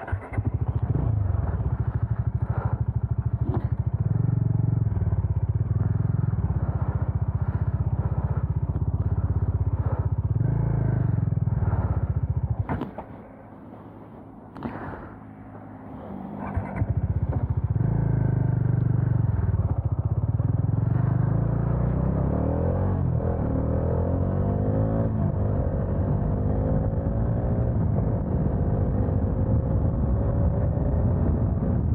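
Bajaj Dominar motorcycle's single-cylinder engine running steadily at standstill, dropping away for a few seconds around the middle, then running again. In the last third it climbs in pitch as the bike accelerates away.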